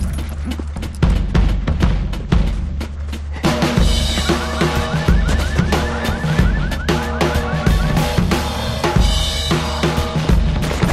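Film shootout soundtrack: rapid automatic-weapon fire over driving drum-heavy music and a deep steady rumble. From about four seconds in, a fast repeating chirp joins in for a few seconds.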